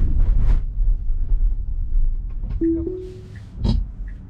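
Low road and tyre rumble in a Tesla Model Y's cabin, fading as the car slows. About two and a half seconds in comes a short two-note electronic chime from the car, the second note slightly higher. A brief sharp burst follows near the end.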